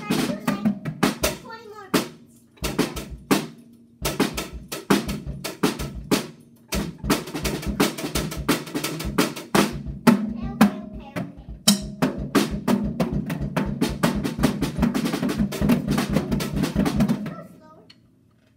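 A beat played on a Natal acoustic drum kit: fast strikes on the drums in runs, with a few short breaks, stopping about half a second before the end.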